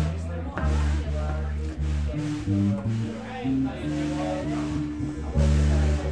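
Live band music: a keyboard playing held low notes that change every second or so, with voices over it.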